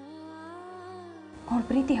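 Soft drama background music: a held drone with one sustained melodic note sliding slowly upward. A woman starts speaking a little past halfway through.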